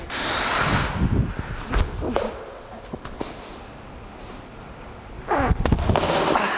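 Handstand attempt on a wooden floor: a few sharp thuds of hands and feet as he kicks up. Near the end he falls out onto the floor with a short vocal grunt and heavy thuds.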